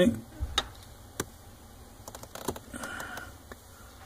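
Light handling noise: a few scattered clicks and small knocks as a telescoping inspection mirror is moved into position under a car's dashboard.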